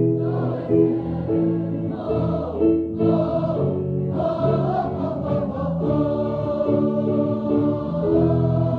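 Choral music: many voices singing together over a rhythmic bass accompaniment.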